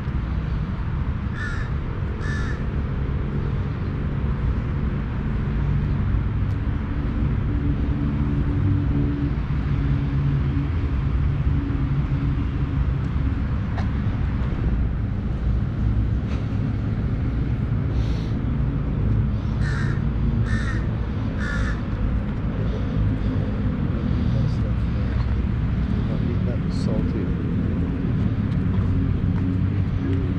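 Crows cawing: two caws near the start and three more in quick succession about two-thirds of the way through, over a steady low rumble.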